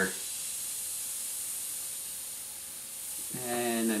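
Gravity-feed airbrush hissing steadily as its trigger is lightly pulled and it sprays paint: a soft, even, high hiss of air.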